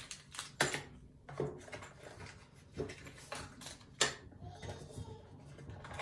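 Hands handling a small clear plastic bag of screws and the product packaging: a handful of separate sharp crinkles and clicks, the loudest about four seconds in.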